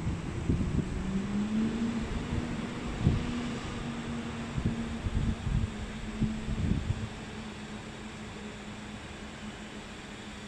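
A steady machine hum whose pitch rises slightly about a second and a half in, with low bumps and rumbles on the microphone during the first seven seconds.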